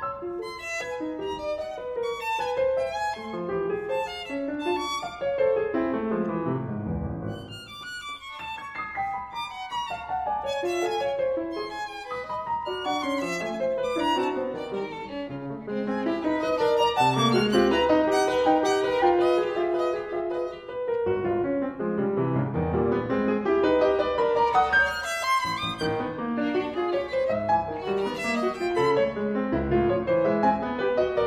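A violin and a grand piano playing a chamber duet together, with dense runs of short notes from both. The music briefly drops quieter about seven seconds in, then grows louder from about halfway through.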